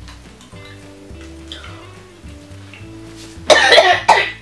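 Background music with steady held notes; about three and a half seconds in, a person coughs loudly, gagging at the taste of a jelly bean.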